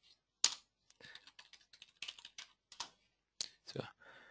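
Computer keyboard being typed on: an irregular run of soft key clicks, with a louder click about half a second in, as a name is entered for a new module.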